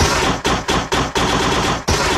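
Electronic dance music from a DJ mix, chopped into a rapid stutter of hard-hitting bursts, several a second.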